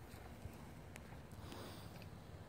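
Quiet outdoor background, faint and even, with one faint click about a second in.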